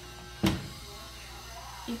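A single sharp knock about half a second in, over a low steady hum.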